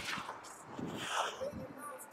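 Hockey skate blades scraping and carving the ice, with a sharp click of a stick or puck at the start and a hissing scrape about a second in, picked up close by a body-worn mic.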